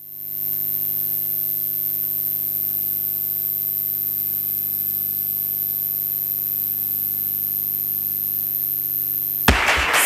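Steady electrical mains hum with a layer of hiss and a thin high whine, fading in over the first half-second and holding level until speech takes over near the end.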